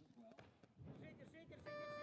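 Weightlifting platform's electronic signal sounding a steady beep near the end, after faint arena quiet; it is the referees' signal on the snatch attempt, here judged no lift.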